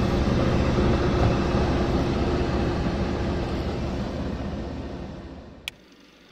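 A loud, steady rumbling roar of dense noise with a faint low hum. It fades out over the last second, and a single short click comes just before the end.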